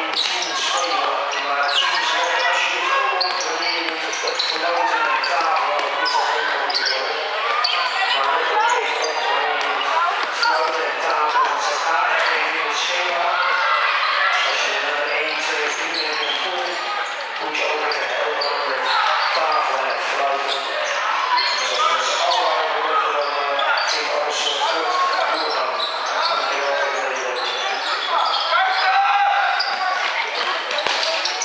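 A basketball bouncing on a sports-hall floor during play, under a steady mix of indistinct shouting voices, all echoing in a large hall.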